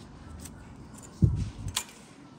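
Motorcycle ignition key and key ring being handled at the key switch, with a low thump about a second in followed by a sharp click.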